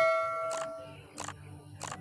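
A bell-chime sound effect from a subscribe-button animation, ringing out and fading away over about the first second, followed by three short clicks.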